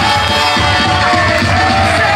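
Idol group's entrance SE music played loud over outdoor stage PA speakers, a track with a steady pulsing beat.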